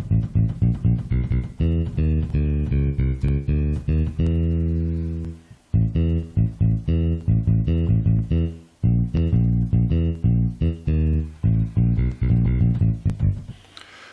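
Synthesized bass-guitar voice of a Boss Dr. Rhythm DR-3 drum machine, played by hand on its pads as a run of short bass notes at changing pitches, with one longer held note about four seconds in and two brief pauses.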